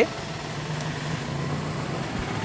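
Steady low motor hum, one unchanging pitch, over outdoor background noise.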